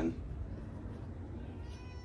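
A domestic cat meowing once near the end: a faint, short meow held on one level pitch.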